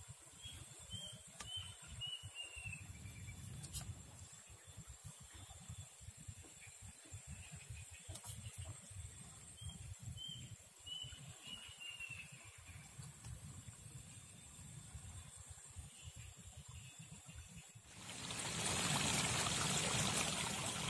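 Riverside outdoor sound: two runs of faint, short, falling bird chirps over a low, uneven rumble. Near the end a steady rush like trickling water comes up and stays.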